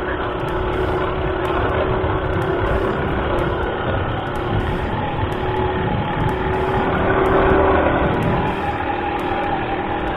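Motorcycle engine running steadily while riding, mixed with wind noise on the camera's microphone; it swells slightly about seven seconds in.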